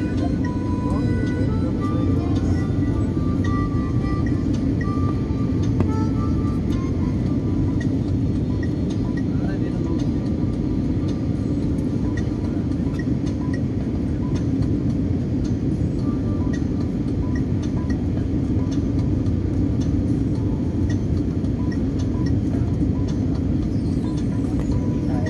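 Steady roar of an airliner cabin during descent on final approach, the engines and airflow heard from a window seat over the wing. Faint music or voices sit beneath it.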